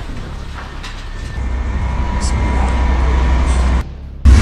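Low rumble of a passing tank, growing louder about a second and a half in, with men's voices over it; the sound cuts off abruptly near the end.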